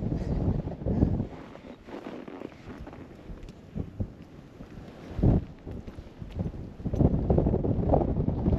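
Wind buffeting the microphone in uneven low gusts, the strongest about five seconds in and again from about seven seconds on.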